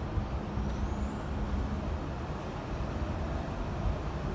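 Steady low background rumble, with a faint high whistle that rises in pitch about half a second in and then holds.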